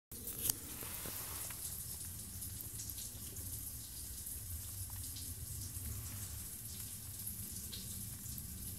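Faint water dripping inside a dam's outlet pipe, into the upstream part of the valve, echoing in the pipe, with a few separate drips over a low steady rumble.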